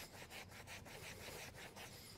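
Faint, quick back-and-forth rubbing of a microfiber towel scrubbed hard over a white vegan-leather car seat, working off a mustard stain.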